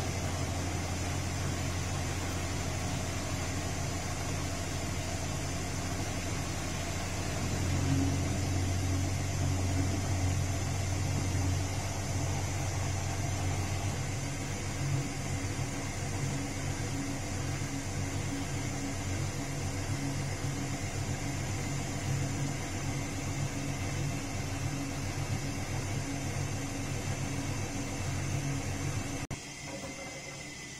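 Castor C314 front-loading washing machine running, its motor giving a steady low hum as the drum turns the laundry during a cotton wash. The hum grows louder about eight seconds in and drops off suddenly near the end.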